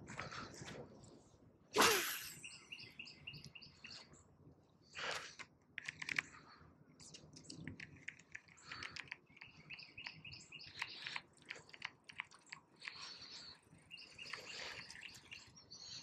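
Small birds chirping on and off, with light clicks and rustles from handling the fishing rod and reel. A sharp swish stands out about two seconds in.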